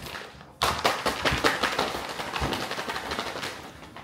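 A plastic snack-chip bag crinkling and crackling as it is handled, starting suddenly about half a second in and going on in a dense, irregular crackle.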